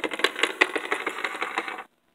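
Rapid clicking and clattering of hard plastic Littlest Pet Shop figurines knocked against a wooden tabletop as a hand moves them along. The clatter stops suddenly just before the end.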